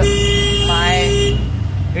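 A vehicle horn sounds one steady note for just over a second, then cuts off, over the running engine of an auto rickshaw.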